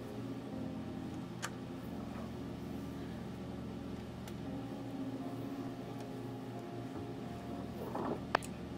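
Hand-lever rivet press setting rivets through a leather strap, giving two sharp clicks about a second and a half and four seconds in, over a steady low hum.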